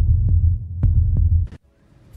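Dramatic heartbeat sound effect: deep double thumps over a loud low throbbing rumble, cutting off suddenly about one and a half seconds in.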